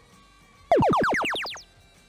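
Electronic sound cue from the FIRST Power Up game field: a loud series of tones, each sliding steeply down in pitch, one after another, starting under a second in and fading out within about a second. It marks the blue alliance using a power-up from its vault.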